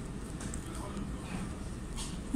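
Steady low background rumble with faint, indistinct voices.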